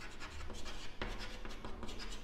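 Chalk writing on a blackboard: a quick run of short, scratchy chalk strokes as words are written out by hand.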